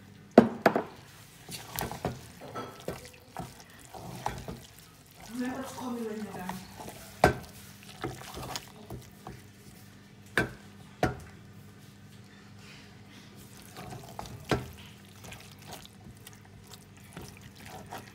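A wooden spoon stirring thick chakalaka bean stew in a stainless steel pot, with soft scraping between a few sharp knocks of the spoon against the pot. The loudest knocks come near the start and about seven, ten and eleven seconds in.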